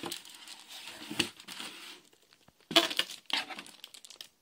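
Clear plastic packaging crinkling, with cardboard rustling, as a bagged figure is pulled out of a cardboard box. The handling noise comes in irregular bursts, with a short lull about two seconds in and the sharpest crinkles just after.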